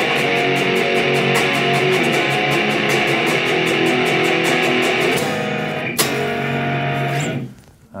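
Electric guitar, a Fender Telecaster tuned down to drop B, played through an amp: power chords with an added third, picked in a quick, even rhythm. A final chord struck about six seconds in rings out and fades away.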